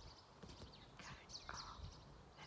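Faint outdoor quiet with small birds chirping in short, high, falling notes, and a few soft clicks about half a second apart.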